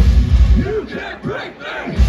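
Heavy metal band's full-band music cuts off about half a second in. In the gap that follows, the crowd yells and cheers.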